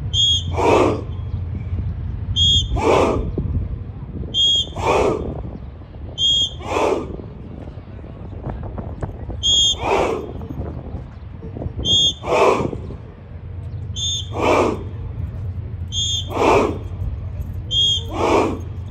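A short whistle blast, each answered at once by a group of trainees shouting together in unison as they perform a martial-arts strike, repeating about every two seconds with one longer pause midway, over a steady low rumble.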